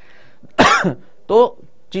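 A man coughs once, sharply and loudly, about half a second in, followed by a short spoken word.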